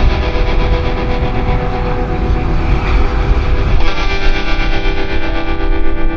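Loud rock music with distorted electric guitar. The music shifts about four seconds in to steadier held chords.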